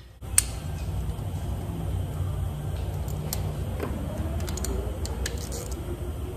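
Sharp metal clicks from a mechanic handling the removed engine parts and hand tools, the loudest just after the start, over a steady low hum that sets in abruptly.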